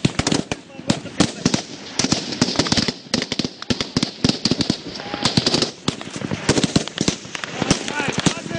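Small-arms gunfire in a firefight: sharp, irregular shots, several a second, overlapping from more than one gun.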